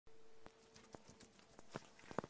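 Near silence: room tone with a few faint, irregular knocks and clicks as a person moves into a chair and settles.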